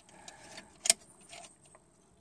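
A nut being put back on a battery terminal stud over an aluminium strap by hand: faint metal handling sounds, with one sharp click about a second in.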